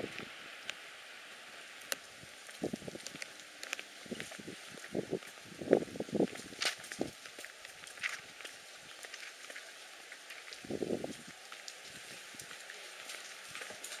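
Footsteps on a brick paver walkway: irregular soft knocks and clicks over a faint outdoor background.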